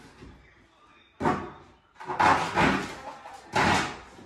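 Cardboard mattress box being torn open: packing tape and cardboard flaps ripped and pulled apart in three loud bursts, the last two longer, echoing in a bare, empty room.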